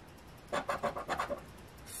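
A scratcher token rubbing the latex coating off a scratch-off lottery ticket spot, in a quick run of short strokes. The strokes start about half a second in and last about a second.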